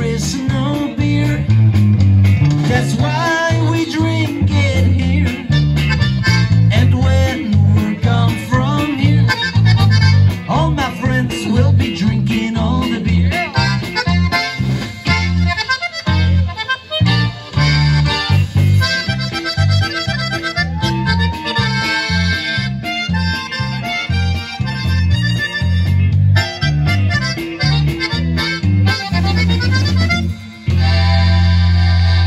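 Live conjunto band playing an instrumental passage: accordion carrying the melody over guitar, bass and drums, with a steady dance beat.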